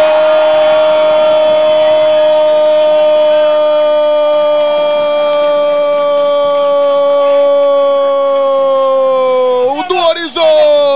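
A football commentator's drawn-out goal cry, one loud held note lasting nearly ten seconds, its pitch sagging slightly near the end before it breaks off.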